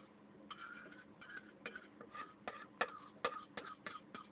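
Metal fork clicking and scraping on a plate: a run of light, irregular ticks with short squeaky scrapes.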